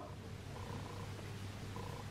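Quiet room tone between spoken counts: a faint, steady low hum, with no distinct sound from the crochet hook or yarn.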